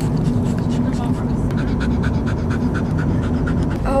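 A dog panting steadily, about four pants a second, over the low running noise of a car cabin on the move.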